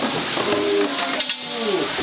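Men's voices, drawn-out and gliding in pitch, over a steady background hiss, with one short sharp click about a second in.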